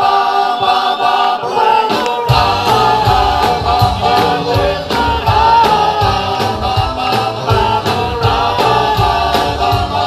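Rock band playing live with several voices singing together; for the first two seconds the voices carry with little low end, then bass and drums come in and the full band plays on.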